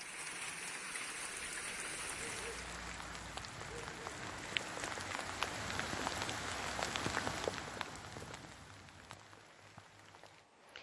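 Hail and rain falling: a steady hiss with many scattered sharp ticks of stones striking, fading over the last couple of seconds.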